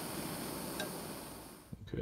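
Gas blowtorch flame hissing steadily as it heats a clamped bronze casting, stopping abruptly near the end.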